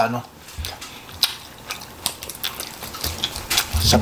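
Close-miked eating sounds: irregular wet clicks and small smacks as cooked chicken is torn apart by hand and chewed, with one sharper click about a second in.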